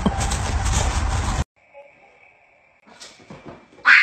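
Dogs playing, with a heavy rumble on the microphone and scattered sharp sounds. The sound cuts off abruptly about a second and a half in, leaving near quiet with a faint steady high whine, and a loud sound starts suddenly at the very end.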